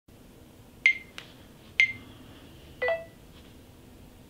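Smartphone mounted on a stand giving three short electronic beeps as its screen is tapped, with a faint tap between the first two; the last beep is a lower, two-note tone.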